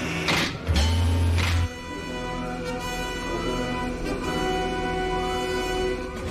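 Orchestral TV score with sustained strings. Over it, within the first second and a half, two sharp mechanical clanks with a heavy low rumble between them: a sound effect for the fighter's cockpit being dropped into the launch bay.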